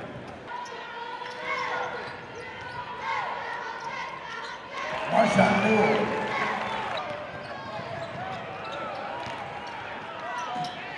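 Basketball game play on a hardwood court: a ball bouncing and sneakers squeaking with short chirps, over the voices of the crowd and players. The voices get louder about five seconds in.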